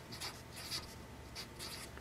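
Felt-tip marker writing a word on paper: a series of short, faint scratchy strokes.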